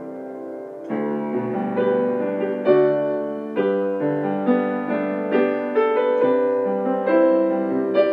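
Piano playing a hymn arrangement. A held chord fades away, then new chords are struck about a second in and change roughly once a second in a gentle, flowing accompaniment.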